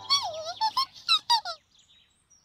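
High-pitched squeaky chattering from a small cartoon animal character: a quick run of about six bending chirps over a second and a half that then stops.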